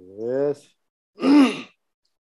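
A person's voice making two drawn-out wordless sounds: a hum that rises in pitch, then, about a second in, a louder breathy sigh-like sound that rises and falls.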